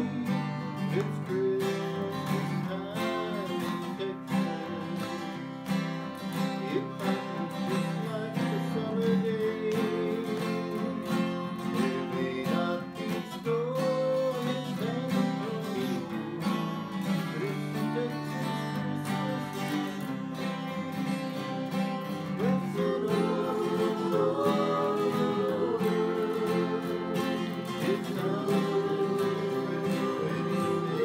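Live acoustic guitar strummed together with a second guitar, playing a song at a steady rhythm, with voices singing along.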